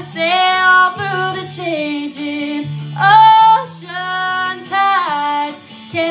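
A woman singing a slow country ballad solo, long held notes that slide up and down in pitch, over a quiet low instrumental accompaniment.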